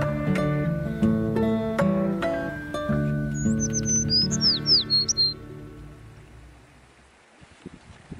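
Plucked acoustic guitar music fading out past the middle, with a bird giving a quick run of high, swooping chirps about three and a half to five seconds in.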